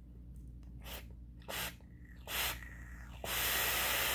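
Three short breaths, then a steady hiss of a long draw on a box-mod vape, starting about three seconds in and lasting about a second and a half.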